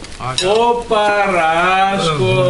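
A voice holding a long drawn-out vowel that dips and rises in pitch, over the crackle of cellophane gift bags being handled.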